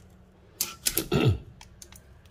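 Retractable steel tape measure being pulled out and laid against a woofer's magnet: a burst of clicks and rattles just over half a second in, with a short low sound falling in pitch, then a few lighter clicks near the end.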